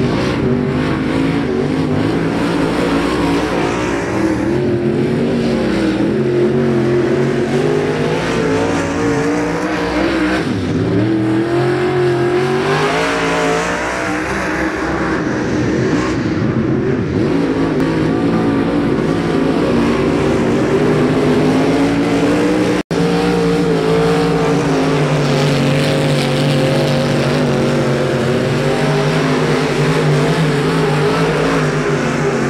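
Dirt-track modified race cars' V8 engines running laps, several at once, rising and falling in pitch as they throttle through the turns and pass by. The sound cuts out for an instant about 23 seconds in.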